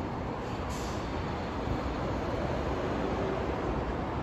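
Steady roar of road traffic from an elevated expressway and the street beneath it, heard from above, swelling slightly in the middle as vehicles pass.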